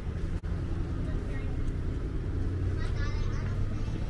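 City street traffic: a steady low rumble of idling and passing cars, with indistinct voices briefly heard in the middle and near the end.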